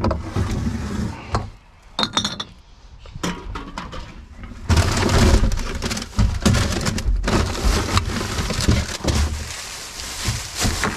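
Rubbish being rummaged in a plastic wheelie bin: paper bags, plastic and a cardboard box rustling and crinkling, with sharp knocks and clatter. It goes quieter for a few seconds, then louder, steady handling comes back at about five seconds in.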